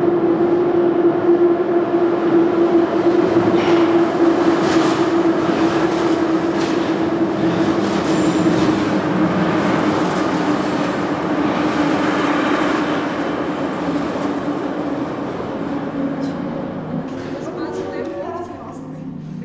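Kyiv metro train running past at close range: a steady whine that sinks slightly in pitch over a rumble, with scattered clacks from the wheels over rail joints. The sound eases off over the last few seconds as the train moves away.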